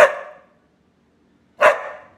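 Cocker spaniel giving two short, sharp barks about a second and a half apart.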